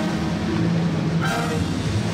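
Philharmonic wind band of clarinets, saxophones and brass playing a long held chord, with higher notes coming in just after a second in.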